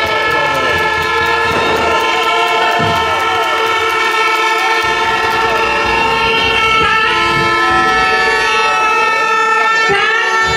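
Demonstrators' horns sounding in long, steady, overlapping blasts at several pitches, loud enough to bury a woman's amplified speech over a public-address system beneath them.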